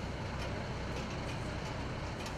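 Heavy cargo truck engine idling: a steady low rumble.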